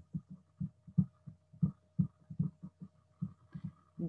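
Soft, irregular low thumps, about four a second, from a stylus tapping and stroking on a pen tablet as handwriting is written.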